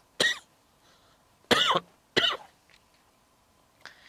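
A man coughing into his fist: three short coughs over about two seconds.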